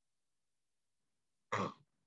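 Silence, then about a second and a half in, one brief throat-clear from a man.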